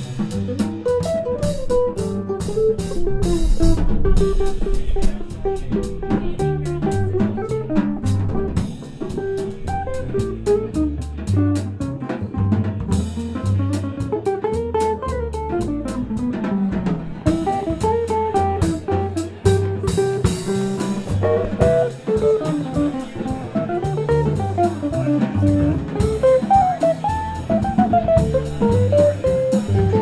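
Small jazz combo playing: guitar lines over a drum kit with cymbals and a walking bass.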